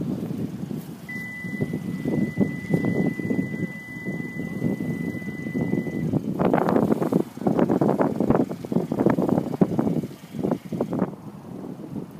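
Kia Optima's smart-key warning sounding one steady, high electronic tone for about five seconds, the signal that the proximity key fob has left the car's interior. About halfway through it stops, and irregular scuffs and knocks follow for several seconds.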